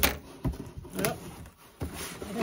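Green plastic-handled scissors set down on a marble tabletop and a cardboard box handled: a loud sharp knock at the start, then a few lighter knocks and rustles.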